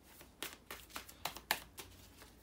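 Tarot cards being handled: a string of light, irregular card snaps and clicks, about six in two seconds, the sharpest about halfway through.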